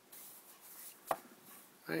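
Handling noise: a soft rubbing or rustling, then a single sharp click about a second in, as a small die-cast toy car is turned in the fingers.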